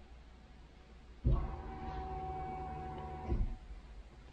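A steady electric whine starts suddenly about a second in, holds for about two seconds and cuts off sharply. It fits an LS1 Camaro's in-tank fuel pump priming as the engine computer restarts at the end of a tune flash, with the engine off.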